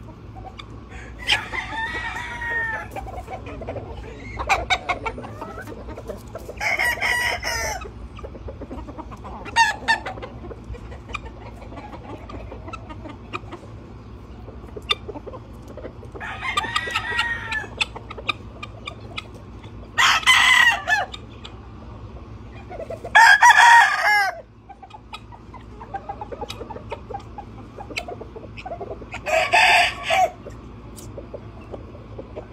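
Gamecock roosters crowing in turn, about eight crows, the loudest two about two-thirds of the way through.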